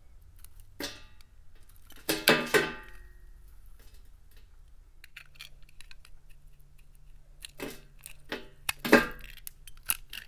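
Utility-knife blade cutting into a bar of silver-coated Dial soap, the dry soap and its painted shell crackling and crumbling off in crisp bursts: a short one about a second in, a louder cluster just after two seconds, and another run of crackles from about seven and a half to nine seconds.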